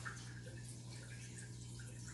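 Dog moving about on a hardwood floor with its nose down: faint scattered ticks and small wet mouth or sniffing noises, with a slightly sharper tick just after the start. A steady low hum runs underneath.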